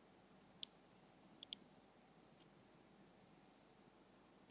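Computer mouse clicks over near silence: one click about half a second in, a quick pair of clicks a second later, and a faint click after.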